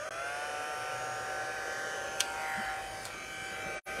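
Embossing heat tool switched on, its fan motor winding up in pitch and then running with a steady hum and rush of air. It drops out for an instant near the end.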